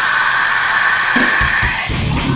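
Heavy metal track in a break: drums and bass drop out and a high guitar note is held steady, with a few low drum hits coming in past the middle of the break.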